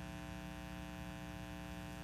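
Steady electrical mains hum, a low buzz with a stack of evenly spaced overtones, unchanging throughout.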